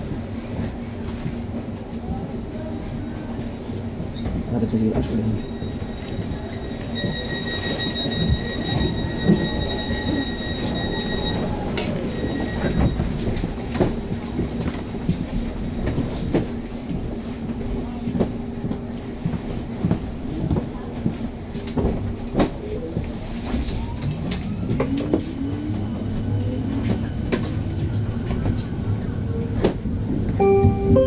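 Interior of a Berlin S-Bahn class 484 electric train standing at a station with a steady hum, a steady high beep for about four seconds, then the rising whine of the traction motors as it pulls away near the end.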